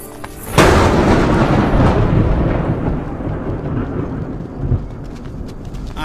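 A dramatic thunder-crash sound effect: a sudden loud clap about half a second in, rumbling on and slowly fading over the following seconds.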